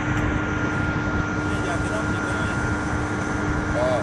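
Steady drone of power-house generator engines: a constant low rumble with an unchanging hum.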